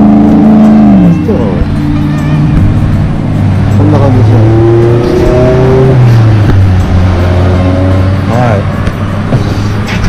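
Loud engine noise from motor vehicles, held at a steady pitch and then dropping, about a second in and again around six seconds, as the engines ease off.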